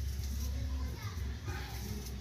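Distant voices, children's among them, over a steady low rumble.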